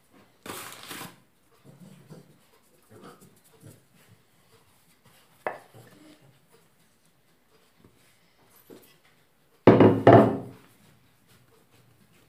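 Hands tipping risen yeast dough out of a bowl onto a floured wooden table: faint rubbing and scraping, one sharp knock in the middle, then a loud, heavy double thump on the table near the end, the loudest sound.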